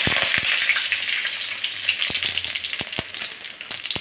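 Panch phoron seeds sizzling and crackling in hot oil in an aluminium kadai, a steady hiss scattered with sharp little pops. The sizzle eases off a little toward the end.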